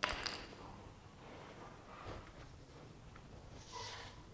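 Hand-working of a tire plug kit on a tire: a sharp clack right at the start, then quiet handling noise with a soft knock, and a short squeaky scrape near the end as the insertion tool pushes the rubber plug into the puncture.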